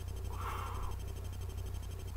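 A steady low hum, with one brief soft sound about half a second in.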